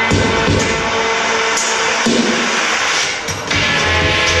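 Electronic dance music from a live DJ mix, played over a PA loudspeaker. The heavy bass line drops out about the start and comes back in about three and a half seconds later.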